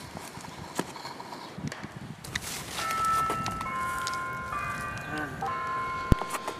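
Footsteps crunching through dry fallen leaves with wind gusting on the microphone, then about three seconds in a set of sustained chime-like tones at a few steady high pitches comes in and holds, changing notes in steps.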